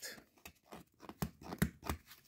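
Tape being picked at and peeled off a paper mystery card pack: a scatter of short crackles and ticks as it resists opening.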